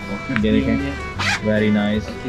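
Men talking over a steady background music track, with a brief rustling noise about a second in.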